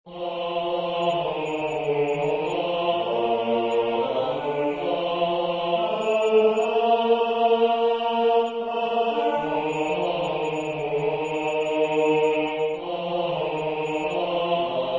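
A four-part vocal arrangement in a choir-like "ah" sound, moving through slow, held chords. The lowest part drops out for a few seconds midway while the upper parts rest and the two bass-clef parts carry the melody.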